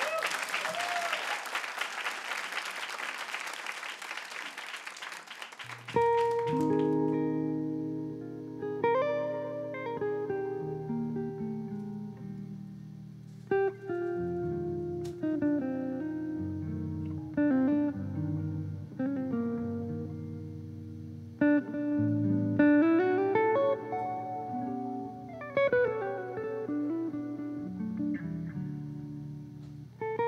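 Audience applause dying away over the first six seconds, then a jazz electric guitar plays chords and single-note melody lines.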